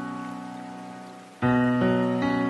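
Slow, soft solo piano music: a chord fading away, then a new low chord struck about one and a half seconds in.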